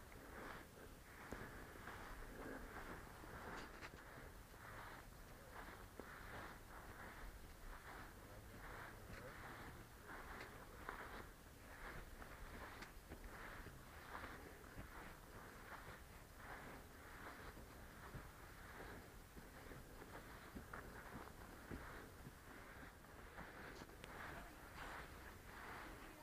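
Faint footsteps of a person walking on dry dirt ground, a soft, steady crunch of a step about every two-thirds of a second.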